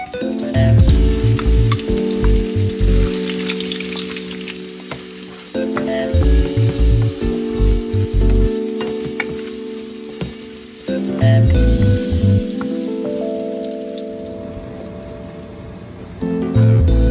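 Cut hot dog pieces sizzling as they fry in a pan, with small crackles through the hiss. Background music with a beat plays over it.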